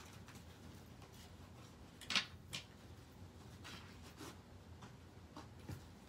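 Soft rustling of paper and waxed linen thread being handled while a journal's binding is hand-sewn, with two louder rustles about two seconds in and a few fainter ones after.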